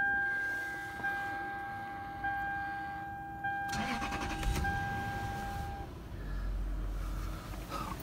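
A Lexus LS430's 4.3-litre V8 cranking and catching smoothly, settling into a low, even idle over the second half. It opens under a steady electronic warning chime that breaks off about once a second and stops a little before six seconds in.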